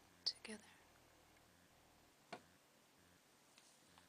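Near silence with a few soft clicks: two close together just after the start and one more about two seconds in.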